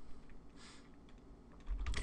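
A few faint, isolated keystrokes on a computer keyboard.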